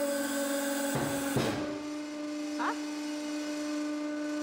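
Hydraulic press running with a steady electric hum while loaded on a Prince Rupert's drop on a stack of coins. A hiss with a couple of short crackles fills the first second and a half.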